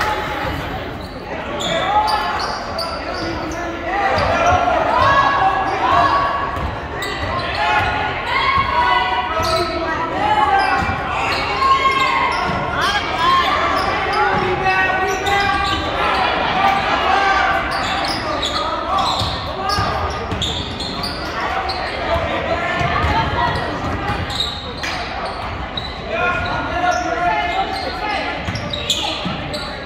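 A basketball bouncing on a hardwood gym floor during a game, amid overlapping voices of players and spectators. Everything echoes in the large hall.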